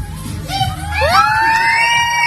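A high voice holds one long, steady note, sliding up to it about halfway through, over a low pulsing beat in the first half.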